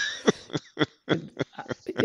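Men laughing: a run of short, breathy laugh pulses that grow shorter and fainter.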